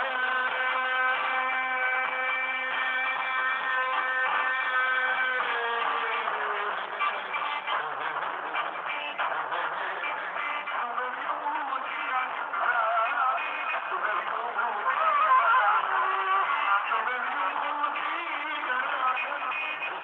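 Live Greek folk music played through a PA: a long held note that slides down about five seconds in, then an ornamented, wavering melody. The band is a male singer on a hand microphone, a clarinet and a large double-headed drum (daouli) beaten with a stick.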